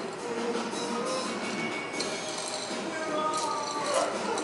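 Background music playing, with a few short clinks of glassware.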